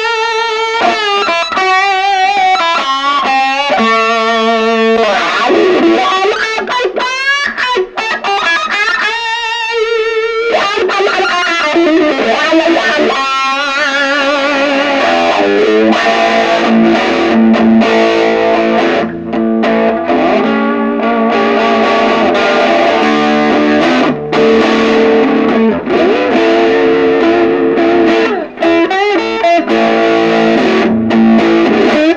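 Humbucker-equipped electric guitar played through a Fender Blues Junior III tube combo with a Jensen speaker, its gain turned up as far as the amp goes, giving a light crunch rather than heavy distortion. For the first dozen seconds it plays a bluesy single-note lead with string bends and wide vibrato, then turns to fuller chorded riffing.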